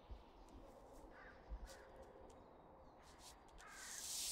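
Near-silent room tone with a distant crow cawing a few times, in short calls.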